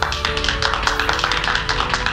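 A group of people clapping, a dense patter of hand claps, over sustained orchestral music.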